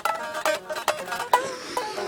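Guitar strummed between sung lines, a handful of chords struck in quick succession, each ringing briefly.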